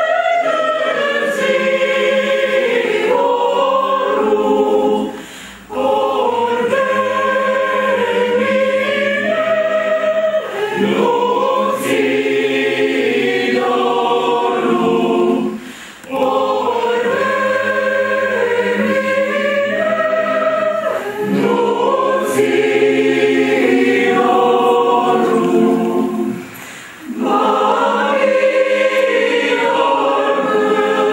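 Mixed choir of women's and men's voices singing in long, sustained phrases. There are three brief pauses between phrases, roughly every ten seconds.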